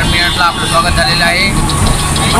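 Mumbai suburban local train running, a steady low rumble heard from the open doorway, with voices over it.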